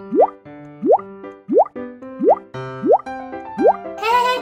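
Playful children's background music with a rising 'bloop' sound effect repeating in time with it, six times about two-thirds of a second apart.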